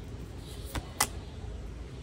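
Tarot cards being drawn from a deck and laid on a wooden table: two quick, sharp card snaps a quarter-second apart, about a second in, over a steady low background rumble.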